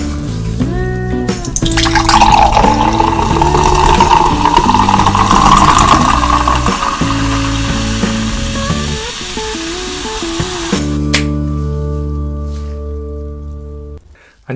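Carbonated grape soda poured from a can into a glass pitcher, a fizzy pouring that runs from about two seconds in to about ten seconds in, under louder background music.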